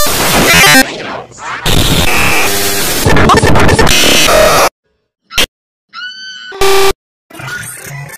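Loud, heavily distorted and clipped music mixed with noisy sound effects, chopped into abrupt fragments that cut off suddenly. About five seconds in it drops to silence for about a second, then short loud bursts return, one with a brief gliding pitched sound.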